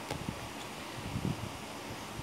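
Pokémon trading cards being handled and flipped through: soft rustling with a few light bumps, over a steady background hiss.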